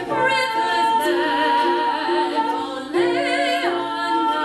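A woman singing long held notes with vibrato over a soft plucked accompaniment of harp and ukulele. About three seconds in, the voice slides up to a new held note.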